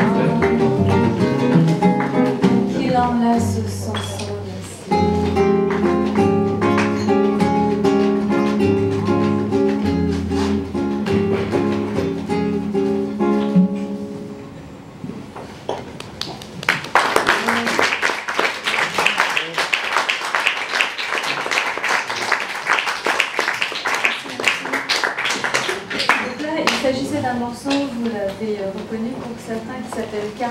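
Closing bars of a song: a woman's voice singing over a bowed cello and a classical guitar, the music ending about halfway through. About three seconds later a small audience applauds for roughly ten seconds.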